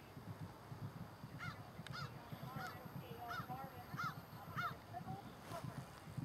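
A bird calling in a run of about six honking calls, roughly two a second, each rising and falling in pitch, with a fainter wavering call beneath them.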